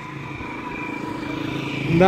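A motorcycle engine running on the street below, growing steadily louder, over general street traffic noise.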